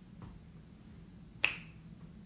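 A single sharp finger snap about one and a half seconds in, with a much fainter soft tap near the start.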